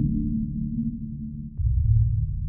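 Instrumental hip-hop background beat: deep, sustained bass-heavy synth notes with almost no high end, and a stronger low bass note coming in near the end.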